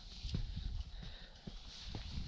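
Climber's boots stepping on rock: a handful of faint, short knocks and scuffs, spaced irregularly through the two seconds.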